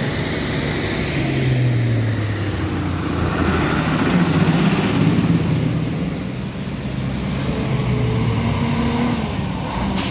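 Heavy Mercedes-Benz lorry's diesel engine running as it drives through deep floodwater, its engine note rising and falling, over a steady wash of noise.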